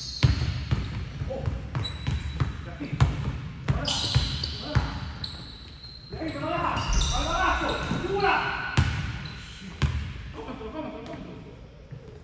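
A basketball bouncing repeatedly on a hardwood gym floor, with a sharp knock for each bounce that rings out in the large hall. The bounces come thickest in the first four seconds and return near the end.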